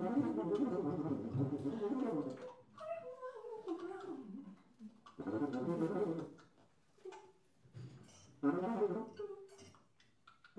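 Free-improvised music: wordless vocal sounds and tuba in short broken phrases with pauses between them, one phrase gliding downward in pitch about three seconds in.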